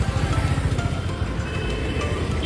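Background music over the steady low rumble of street traffic.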